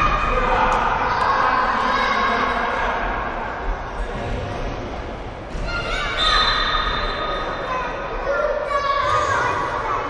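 Children shouting and calling out during an indoor football game, some calls held for a second or more, echoing in a large sports hall.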